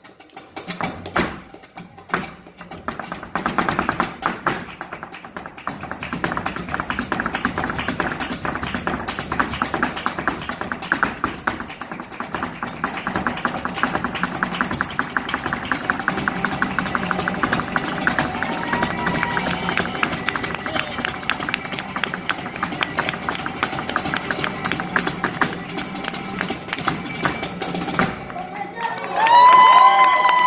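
Flamenco dancer's heeled shoes striking the stage in zapateado footwork: a few separate stamps, then a long, very fast run of taps that builds in loudness and stops suddenly near the end. A voice cries out in the last second or two.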